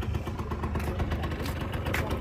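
Honda Gyro Up's 50cc two-stroke engine idling with a steady rumble.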